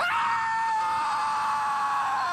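A cartoon character's long scream, held at one high pitch without a break.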